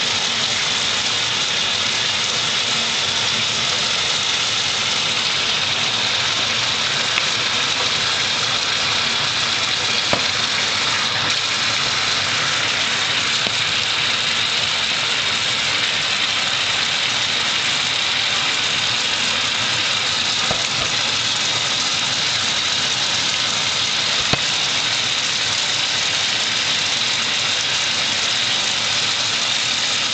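A small motor running steadily, a constant whir with an airy hiss that holds at one level throughout.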